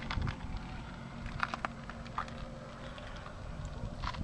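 Low steady rumble with a faint hum, and a few light clicks in the middle.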